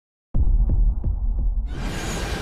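Intro sound design for an animated title: deep bass pulses about three a second, starting a third of a second in, then a hissing swell building near the end.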